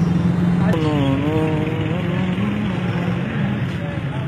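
A motor vehicle engine running steadily close by, a low hum. About a second in, a person's voice rises over it briefly.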